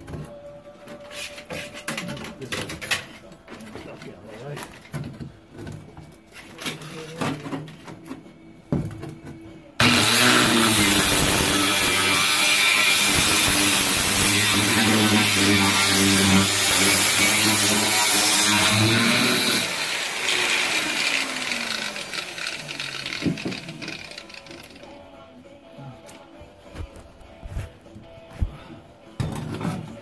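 Handheld angle grinder with a cutting wheel switching on about ten seconds in and cutting through the sheet-steel floor pan of a 1978 VW Super Beetle for about ten seconds, then switched off and spinning down with a falling whine. Before it starts, knocks and clatter as the grinder is handled and set against the pan.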